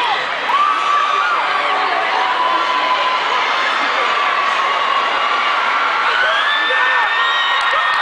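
Large concert crowd cheering, with many high-pitched screams held over it; one scream rises and is held from about six seconds in.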